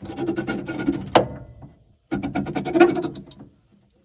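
A car door's manual window regulator is cranked, and the glass scrapes and grinds along its channel in two runs with a short pause between them. A brief squeak comes about a second in. The winding is a little rough.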